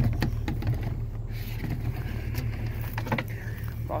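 An SUV's engine idling steadily, a low hum, while someone walks through grass with a few short knocks and rustles from footsteps and handling.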